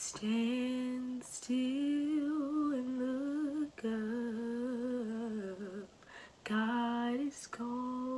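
A young woman singing a worship song unaccompanied, in long held notes with a wavering vibrato and short breaks for breath between phrases, heard through a video call.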